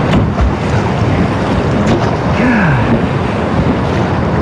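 Colorado River whitewater rushing and spraying around a rowing raft, with wind buffeting a GoPro's microphone: a loud, steady noise.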